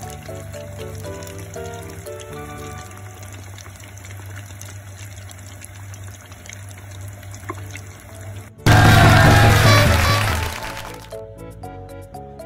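Background music, and about three-quarters of the way through a sudden loud sizzle of deep-frying oil that lasts about two seconds and then fades. The oil is frying shōsaifugu backbones for karaage.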